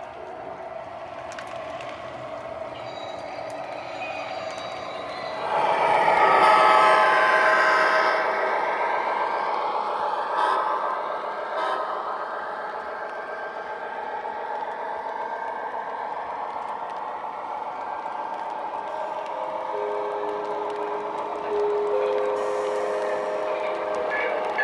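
Lionel O gauge American Orient Express passenger cars rolling along three-rail model track, a steady running rumble of wheels on rails. It swells sharply about five or six seconds in as the cars pass close, then eases, and a couple of steady held tones sound near the end.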